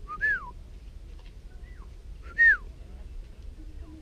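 Two short whistled calls about two seconds apart, each a quick rise and then a fall in pitch, with a fainter similar call between them.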